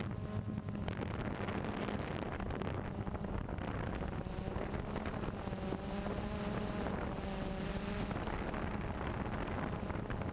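Wind rushing on a small camera's microphone, over a steady low hum.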